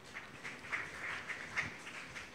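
Faint rustling and light handling noise close to a lectern microphone as a small object is picked up, with small irregular bumps.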